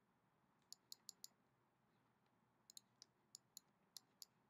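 Faint computer mouse clicks over near silence: four quick clicks about a second in, then about five more spread over the last second and a half.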